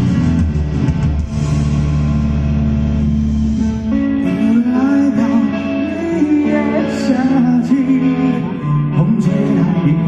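A live rock band plays through a large outdoor PA: electric guitars, bass and drums. A sung melody comes in about four seconds in.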